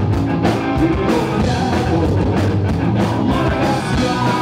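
Live rock band playing: electric guitar and drums with a man singing into the microphone, the drum kit hitting in a steady beat.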